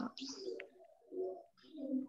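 Two faint, short, low-pitched bird coos.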